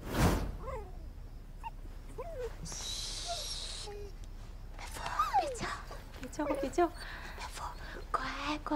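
A dog whimpering in short, high whines that slide up and down, after a thump at the start.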